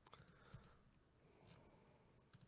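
Faint clicks of a computer mouse, a few separate sharp ticks over near silence.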